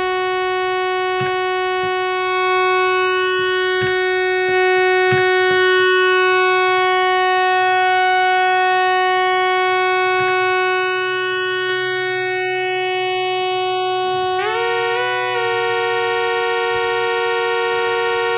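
Elektron Analog Four analog synthesizer holding one sustained pad note, with a slow sweep running through its upper overtones as its oscillators are pitched against each other. About 14 seconds in, a second, higher pitch steps in above the root, turning the single note into a chord-like drone.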